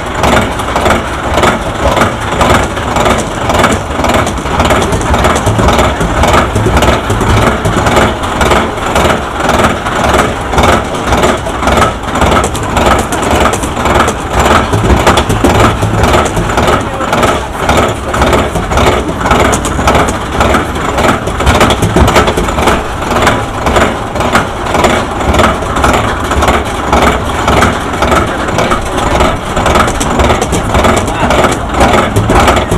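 Arrow suspended roller coaster train being hauled up the chain lift hill: a loud, steady, rhythmic clatter of the lift chain and the anti-rollback dogs clacking over the ratchet.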